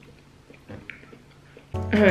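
Faint mouth sounds of someone chewing a piece of fresh pineapple, then background music comes back in near the end.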